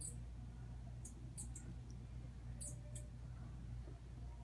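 Potter's wheel humming steadily while wet clay is shaped by hand, with a handful of short, faint high squeaks scattered through it.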